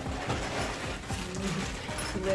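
A plastic bag of small metal assembly screws being lifted out of a cardboard box and handled: irregular small clicks of screws shifting against each other, with plastic and packing rustle. Background music plays underneath.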